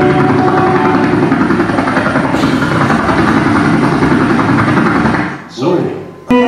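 Audience clapping and cheering after a live band's song ends. It dies away abruptly about five and a half seconds in.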